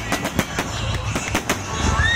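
Fireworks display: aerial shells bursting in quick succession, sharp bangs about four or five a second over a continuous low rumble.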